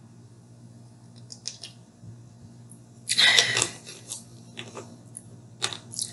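Drinking from a plastic drink bottle and handling it, with faint small sounds, a short noisy rush about three seconds in, and a few light clicks near the end.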